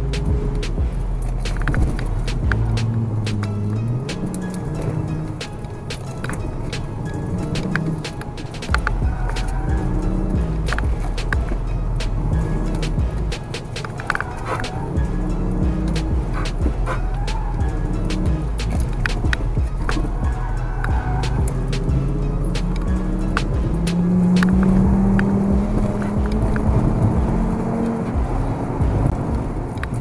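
Background music playing over the in-cabin sound of a Volkswagen Golf Mk6's 2.5-litre five-cylinder engine and road rumble. The engine climbs steadily in pitch near the end.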